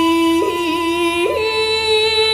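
A woman chanting shigin, Japanese recitation of classical Chinese poetry, on a long held note. Her voice wavers briefly about half a second in, then steps up to a higher held note a little over a second in.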